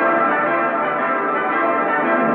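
Closing music from an old black-and-white film's end title: a loud, sustained, bell-like chord held steady, thin and muffled like an old film soundtrack.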